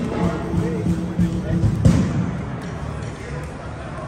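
A single strike on a 15-inch Bosphorus 1600 Era hi-hat, a sharp hit about two seconds in that rings briefly and dies away, over the chatter of a busy hall.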